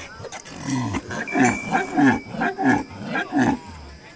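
A quick series of about eight short animal calls, roughly three a second, loud and evenly spaced.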